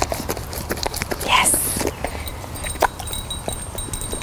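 A dog licking peanut butter from inside a plastic Baskerville-style basket muzzle: a quick, irregular run of wet licking clicks, with a short hissing noise about a second in.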